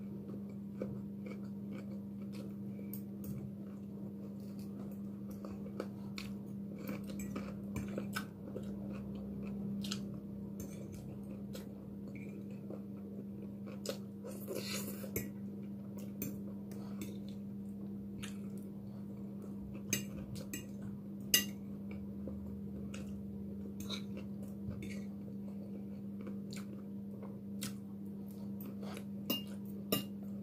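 A person chewing food, with a metal fork clicking and scraping against a plate in many short, irregular clicks. A steady low hum runs underneath.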